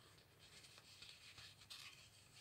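Near silence: faint room tone, with a couple of barely audible tiny clicks.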